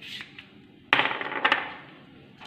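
Stainless-steel spice shakers clinking as they are handled and set down beside a glass mixing bowl. A ringing metallic clatter comes about a second in, with a second sharp clink half a second later.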